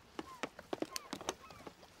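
Faint, brief gull calls over the sea, with a scatter of light clicks and knocks.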